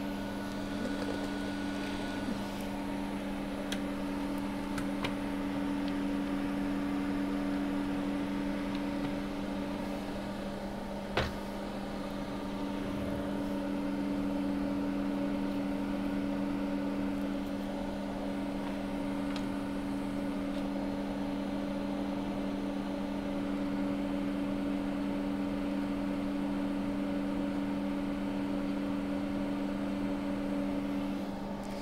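A steady electrical machine hum from workbench equipment, holding two low tones. Light ticks of handling come early, and one sharp click about a third of the way through.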